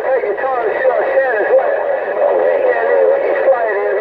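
Voices of distant stations received over a Stryker SR-955HP 10-meter radio's speaker, several talking over one another, in the narrow, thin tone of radio audio with a steady hiss underneath.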